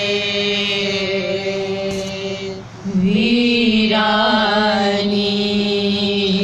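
Women's voices chanting a noha, a Shia lamentation, in long drawn-out held notes; the line breaks off briefly about halfway and a new held note begins.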